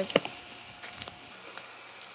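Handling noise from a cardboard takeout box: one sharp knock just after the start, then a few faint taps and rustles.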